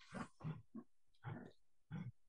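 Several short, faint, low vocal sounds from a person, like grunts or muttered syllables, with no clear words.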